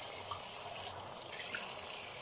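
Tap water running steadily into a bathroom sink while the face is rinsed with wet hands.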